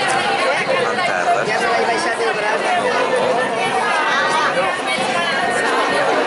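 Several people chatting at once in overlapping conversation, at a steady level throughout.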